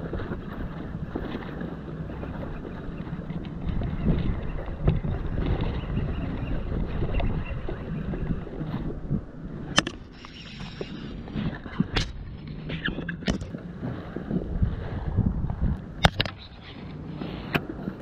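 Wind buffeting the microphone over the handling noise of an inflatable kayak and fishing tackle as a hooked largemouth bass is brought aboard, with a few sharp knocks and clicks in the second half.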